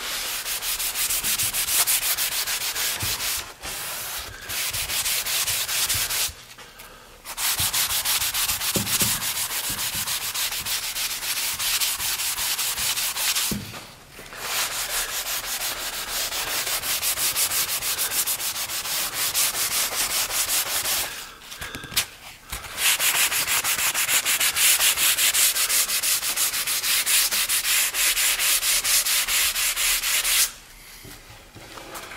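Sanding sponge rubbed by hand back and forth over a white-primed, black-glazed oak cabinet door: a dry, scratchy sanding sound in long runs with a few short pauses. The sanding takes the surface whiter while the black glaze stays dark in the open oak grain.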